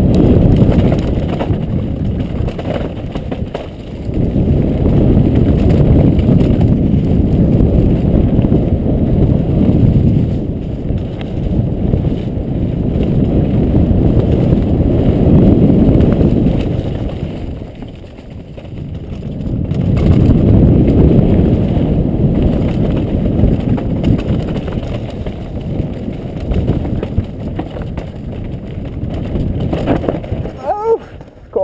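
Wind rushing over a helmet-mounted camera's microphone and mountain-bike tyres rumbling and chattering over a rough dirt downhill trail at speed. The rush swells and eases with the rider's speed, dropping back about four seconds in and again past halfway.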